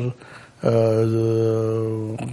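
A man's drawn-out hesitation sound, a filler held on one steady low pitch, starting after a short pause and held for about a second and a half.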